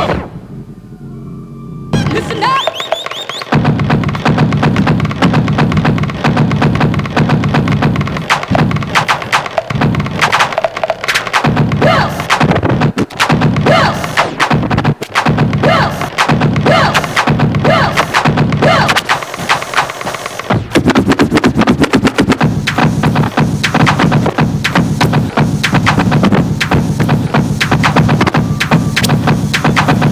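Turntablist battle routine on two turntables and a mixer: drum breaks cut up and scratched in quick, choppy rhythmic stabs. The sound starts with a brief quieter break of about two seconds.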